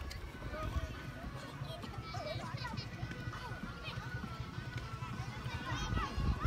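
Distant voices of children and spectators chattering and calling out across an open football field, over a low rumble on the microphone.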